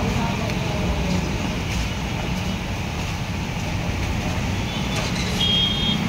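Steady low rumble of background road traffic, with a brief high beep near the end.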